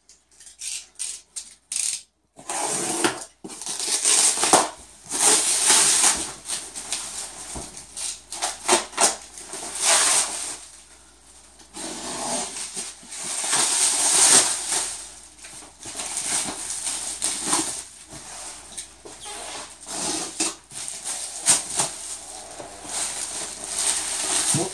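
Black plastic bag wrapping being cut and torn off a cardboard box: crinkling and rustling in irregular bursts, with a few short clicks in the first couple of seconds.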